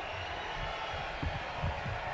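Handheld microphone jostled and pushed away: a few low thumps and rustles over steady background crowd noise.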